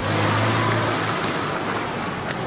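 A car driving past on the street, a loud steady rush of engine and tyre noise with a low engine hum in the first second.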